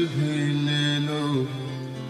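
Live ghazal performance: a male voice holds one long sung note over the accompaniment and lets it go about a second and a half in. Steady sustained accompaniment tones carry on after it.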